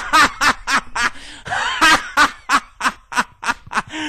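A person laughing hard in quick, even bursts of about four a second, with a longer wavering laugh in the middle.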